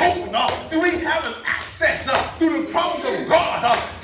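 A man's preaching voice in a rhythmic, chant-like delivery, with several sharp percussive hits between phrases.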